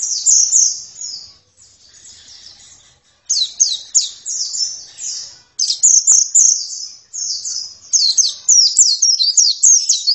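White-eye (pleci) singing a fast, high twittering song of rapid down-slurred notes. The song comes in phrases, with a softer stretch in the first few seconds, and runs almost without a break through the second half.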